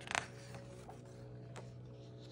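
A page of a picture book being turned by hand: one short paper rustle just after the start, then a few faint soft ticks over a low steady hum.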